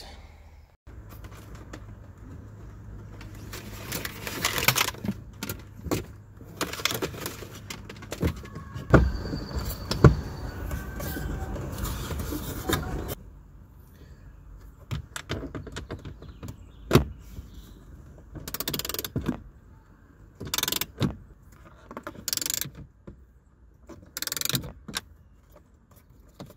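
Hands handling a plastic dashboard gauge pod and an antenna cable: scattered clicks, taps and rustles of plastic and cable. A low steady hum runs under the first half and stops about 13 seconds in.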